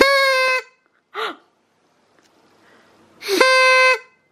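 A small toy horn blown twice: two short, steady, reedy toots about three seconds apart, each lasting about half a second.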